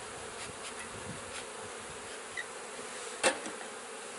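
Honey bees buzzing steadily around an open hive, with one brief knock about three seconds in.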